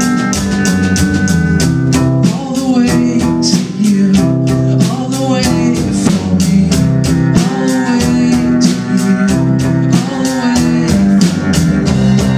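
Live band playing an instrumental passage: strummed acoustic guitar, bowed cello with gliding notes and electric guitar over a drum kit keeping a steady beat.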